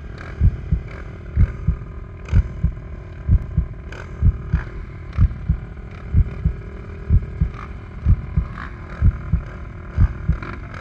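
Race quad engines idling at the starting gate, a steady hum broken by heavy low thumps about twice a second.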